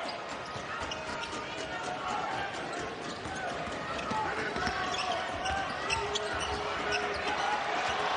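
Basketball dribbled on a hardwood court over the steady murmur and voices of an arena crowd.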